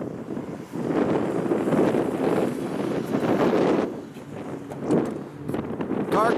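Wind buffeting the camera microphone, a gusty low rumbling noise that is loudest from about one to four seconds in and then eases.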